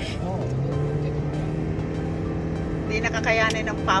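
Steady road and engine noise inside a moving car, with background music: held notes come in about half a second in. A voice is heard briefly near the end.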